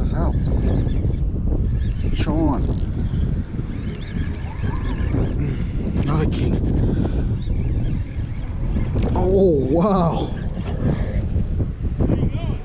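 Steady wind rushing over the microphone, with a few short wavering voice sounds about two seconds in, near five seconds and near ten seconds.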